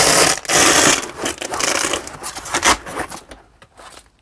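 Hook-and-loop (Velcro) tearing as a swappable tool-pocket panel is pulled out of a Veto Pro Pac Tech Pac Wheeler tool backpack. Two loud rips come in the first second or so, then shorter crackling tears that die away after about three seconds.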